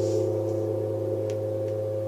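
Hammered metal gong ringing on after a single strike: a steady low hum with several steady higher tones above it, fading only slightly.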